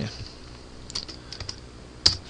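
A few light computer-keyboard keystrokes, a quick cluster of taps around the middle, while code is being reformatted.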